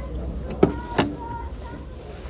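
Rear door latch of an Opel Astra hatchback clicking twice, about half a second apart, as the door is opened.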